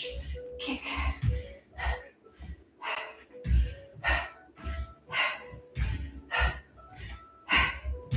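A person breathing out hard in short bursts, about once a second, in time with punches and kicks, with low thuds of bare feet landing on a floor mat.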